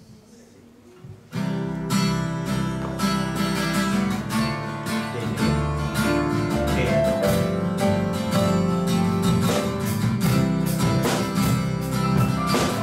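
Acoustic guitar starts strumming chords about a second and a half in, after a brief hush, and keeps up a steady strum.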